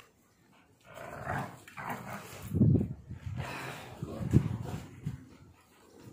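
Pitbull-bully mix dog growling in a string of rough bursts while tugging on a rope toy in play, starting about a second in.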